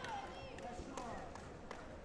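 Sharp slapping impacts of taekwondo sparring, about four spread over two seconds, with raised voices near the start and again about half a second in.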